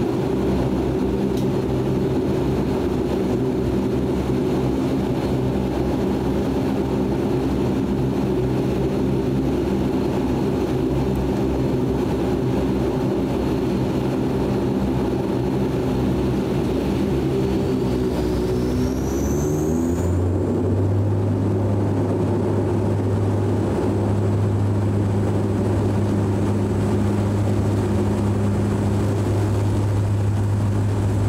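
Turboprop engines and propellers of a DHC-8 Q400 heard from inside the cabin beside the propeller. They run steadily at first, then about two-thirds of the way through a rising whine as power comes up for takeoff. The sound settles into a strong, steady propeller drone.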